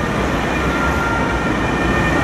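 Distant ambulance's alternating two-tone siren, faint and only just emerging about half a second in, over the steady rumble of city traffic.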